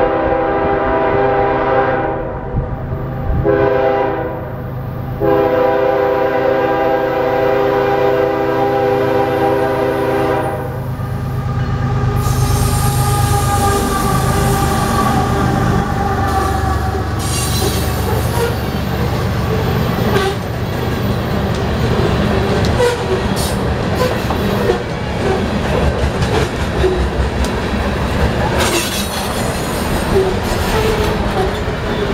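BNSF diesel locomotive's air horn sounding the grade-crossing signal: the end of a long blast, a short blast, then a final long blast of about five seconds that ends about ten seconds in. The locomotive then rumbles past, and a string of coal hopper cars follows with a steady rolling rumble and rail clatter.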